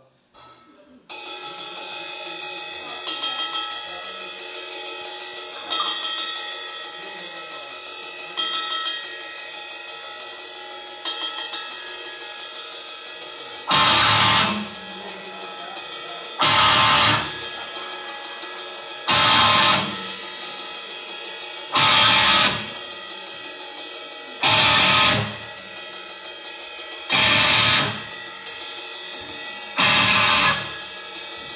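Live metal band, drum kit and electric guitar, starting a song about a second in: fast, even cymbal ticking under sustained guitar, with an accent every few seconds. From about halfway, loud full-band hits about a second long come roughly every two and a half seconds.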